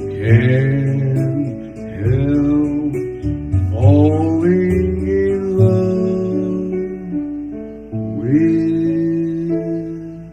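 A man singing karaoke into a handheld microphone over a backing track led by acoustic guitar, his voice sliding up into long held notes.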